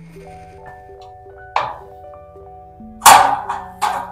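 White plastic pegboard accessories knocking and clicking as they are hooked onto a pegboard: three sharp knocks, the loudest about three seconds in. Soft background music with gentle sustained notes plays underneath.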